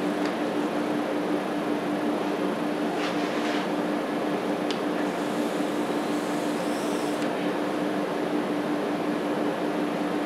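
Steady whirring of cooling fans with a constant low hum tone underneath, even and unchanging throughout.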